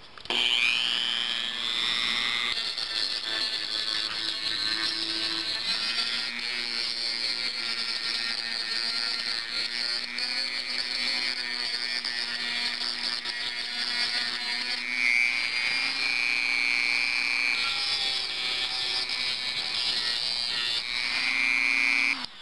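Dremel Model 285 rotary tool spinning up, then running steadily with a high-pitched whine while a quarter-inch, 60-grit sanding band on a sanding drum grinds paint off sheet metal.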